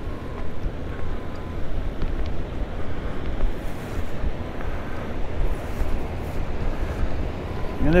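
Steady rushing noise with a heavy low rumble: wind buffeting the microphone, over the sound of water flowing out through the dam's outlet channel.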